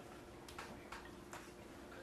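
Quiet room tone during a pause in speech: a faint steady hum with a few faint, irregular clicks.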